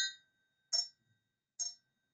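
Two empty crystal glasses clinked together three times, a little under a second apart, each clink leaving a clear ringing tone; the ring is pure and even, described as very harmonic.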